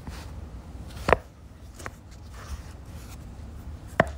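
Three short sharp taps or clicks, the loudest about a second in, over a low steady hum.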